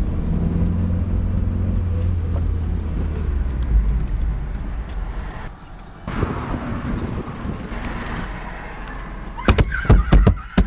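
Car engine running with a steady low rumble heard from inside the cabin, dropping away about five and a half seconds in, followed by a fast run of light ticks. Near the end, several loud thumps of hands slamming against the windscreen.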